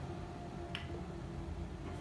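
A single short, sharp click a little under a second in, over a steady low room hum.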